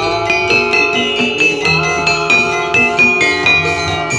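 Javanese gamelan music accompanying a jathilan dance: bronze metallophones and gongs ringing in a steady rhythm over drum strokes.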